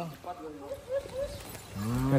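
Faint voices in the middle, then a man's low, drawn-out 'hmm' near the end, rising in pitch into speech.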